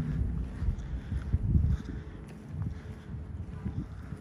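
Wind buffeting the microphone, an uneven low rumble that eases off about halfway through.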